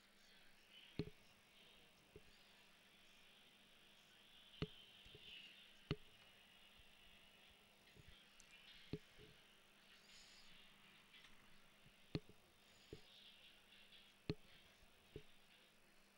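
Near silence: faint background hiss with scattered faint clicks, about one every second or two.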